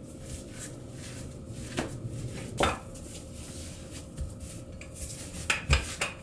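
Dough being handled and rolled out with a wooden rolling pin on a silicone baking mat: faint rubbing with a few light knocks, two of them close together near the end.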